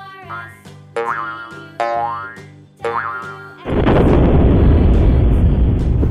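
Cartoon sound effects over children's music: three short springy boings about a second apart, then a loud rushing noise from a little before four seconds in.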